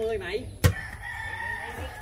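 A sharp smack of a volleyball being hit, then a rooster crowing in one long, level call for about the last second.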